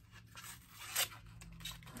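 A crimped plastic candy-style sachet of loose pigment being opened by hand: a scattering of crinkles and rips, the loudest about a second in.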